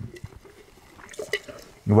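A few faint, short wet liquid sounds at the mouth and in a mug, about a second in: a wine taster spitting out a sip of sparkling wine.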